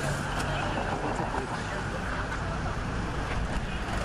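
A vehicle engine idling with a steady low hum amid road traffic, with voices talking over it.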